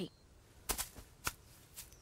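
A few short, faint clicks or taps spread through an otherwise quiet stretch, the sharpest a little past the middle.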